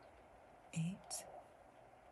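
A woman's voice saying one counted number, "eight", a little under a second in, over quiet room tone.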